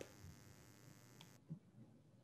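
Near silence: faint room tone with a soft click about one and a half seconds in.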